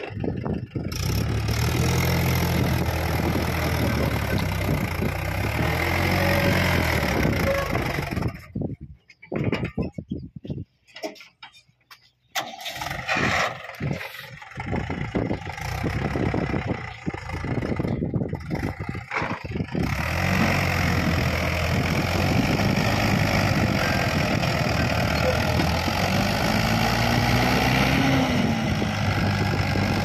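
Mahindra 475 tractor's diesel engine running under load as it hauls a fully loaded trailer of soil. The steady engine note drops out for a few seconds about a third of the way in. It comes back broken up, then runs steady again from about two-thirds of the way through.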